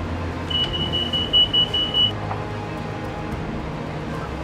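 Chairlift terminal machinery running with a steady low hum as the lift is turned in reverse. A rapid high-pitched electronic beeping, about five beeps a second, sounds for about a second and a half near the start.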